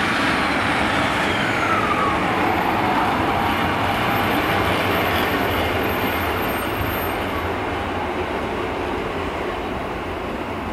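Transport for Wales Sprinter-type diesel multiple unit passing close and pulling away, its engine and wheels on the track making a steady noise that slowly fades in the second half. A brief falling whine comes about two seconds in.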